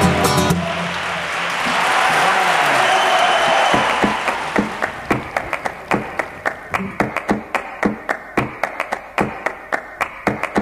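A flamenco song for voice and acoustic guitar ends on a final chord, followed by audience applause that swells and then fades. From about halfway through, a steady rhythm of sharp taps, about two or three a second, takes over.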